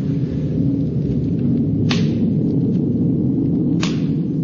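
A steady low rumble with a faint hiss over it, broken by two sharp clicks about two seconds apart.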